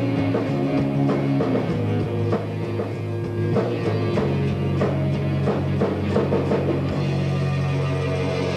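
Live rock band playing: electric guitar, bass and drum kit, with held bass notes under steady drum hits.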